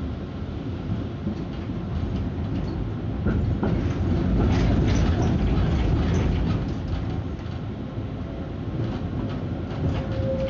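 Konstal 105Na tram running along the track, heard from inside the car: a steady low rumble with scattered clicks and knocks from the wheels and body. It grows louder for a few seconds in the middle.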